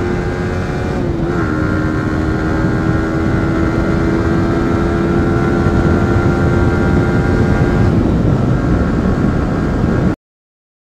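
Yamaha sport motorcycle's engine running at highway speed, a steady drone whose pitch dips slightly about a second in, over heavy wind rumble. The engine tone weakens near the end.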